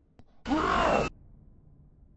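A cartoon character's short, startled vocal cry, played back at half speed so it comes out lower and drawn out. It lasts about half a second, starting about half a second in.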